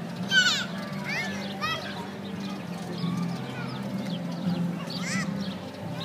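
Outdoor crowd chatter in the background, broken by short high-pitched squeals from children playing: three in quick succession in the first two seconds, the first the loudest, and one more about five seconds in.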